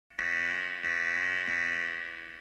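A sustained musical chord, struck again twice and fading near the end: the opening of a piece of music.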